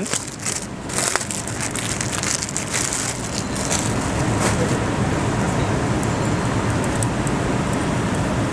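Plastic garment packet crinkling and rustling as it is opened and handled, with sharp crackles in the first second, then steady rustling as the cloth is drawn out and unfolded.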